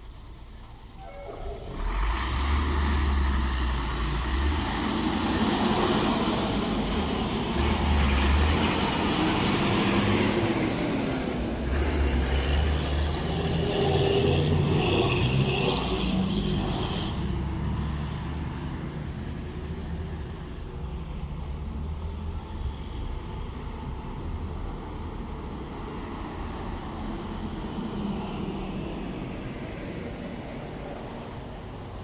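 Road traffic passing close by: a stream of trucks, buses and cars driving past, with engine rumble and tyre noise. It starts quietly, swells about two seconds in, is loudest through the first half, and eases off somewhat after that.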